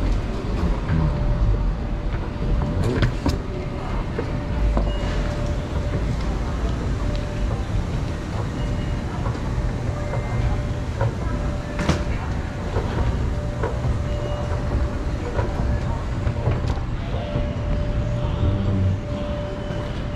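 Airport terminal hall ambience: a steady low rumble of building and crowd noise with indistinct voices, a faint intermittent tone, and a few sharp clicks or knocks.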